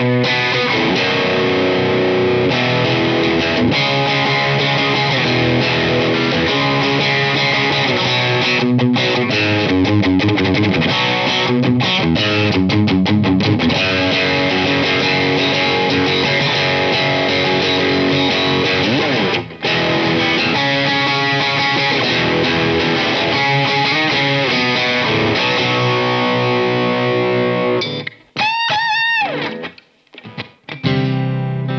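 Fender American Vintage II 1951 Telecaster, an electric guitar, played through an amplifier: a continuous run of single notes and chords with a short break about twenty seconds in. Near the end the playing turns choppy, with a few bent notes.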